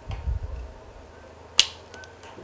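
A low muffled rumble in the first half second, then one sharp click about a second and a half in.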